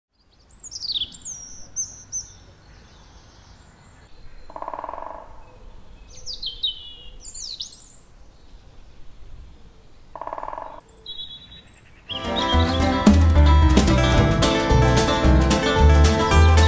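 Songbirds singing in short, high, falling phrases over quiet woodland ambience, with a lower buzzy sound twice. About twelve seconds in, plucked string music with a steady beat starts abruptly and becomes the loudest sound.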